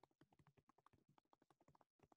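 Near silence, with faint irregular ticks a few times a second.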